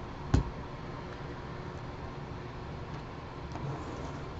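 A single sharp knock about a third of a second in, then a steady low background hum with one faint tap near the end.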